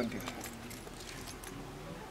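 A pause in a man's outdoor talk: low background noise with a few faint ticks.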